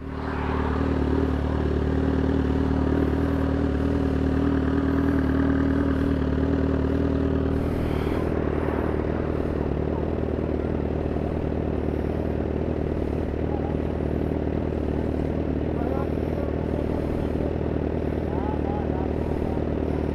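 Motorcycle engine running steadily on the move. Its steady note changes about eight seconds in.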